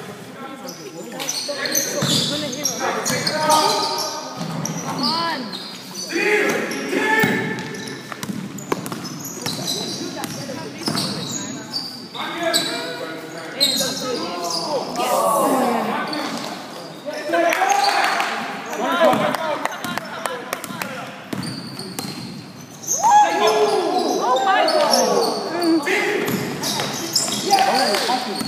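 A basketball bouncing on a sports hall court during a game, with players' voices calling out and echoing in the large hall.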